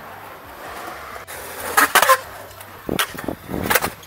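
Skateboard wheels rolling over concrete, with a cluster of sharp clacks from the board and wheels striking the concrete about two seconds in and more near the end.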